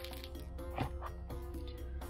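Soft background music with steady held notes, over which a hard plastic bead organizer box gives a few light clicks and knocks about a second in as it is turned over and its lid opened.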